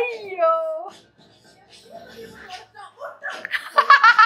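A woman laughing loudly in quick pulses near the end, after a shouted line of film dialogue at the start, with film background music underneath.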